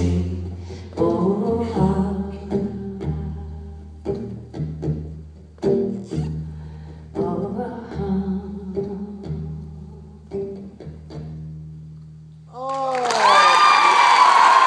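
Plucked acoustic strings play the slow closing notes of the song, with low bass notes ringing under them, and fade out. Near the end the audience breaks into loud cheering, whooping and applause.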